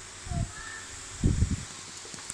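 A few low, muffled thumps and rumbles, a short cluster about a third of a second in and a louder cluster about a second and a quarter in.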